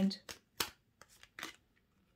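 Tarot cards being handled as a card is pulled off the top of the deck: about four short, sharp snaps in the first second and a half.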